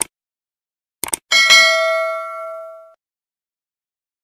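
Sound effects of a subscribe-button animation: a mouse click at the start, a quick double click about a second in, then a single bell ding that rings out and fades over about a second and a half.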